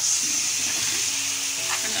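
Sliced liver with grated onion and spices sizzling steadily in hot oil in a metal pan, while a spoon stirs it through.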